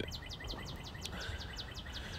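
Outdoor background with a bird's rapid chirping: a quick, even run of short high notes, about seven a second.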